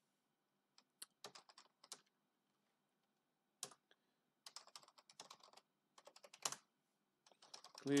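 Computer keyboard typing in short, faint bursts of keystrokes with pauses between them, as a password and short terminal commands are entered.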